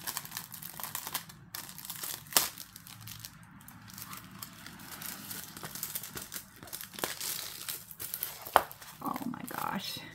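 Clear plastic packaging of a diamond painting kit crinkling and rustling as it is cut open and the kit is pulled out and handled, with a few sharp clicks along the way.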